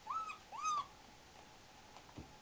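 Two short, high-pitched yelps from a four-week-old German Shepherd puppy while wrestling with a littermate. Each yelp rises and then falls in pitch, and the second is a little longer.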